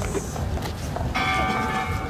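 The bell hanging inside the Children's Peace Monument is struck about a second in and rings on with several steady tones.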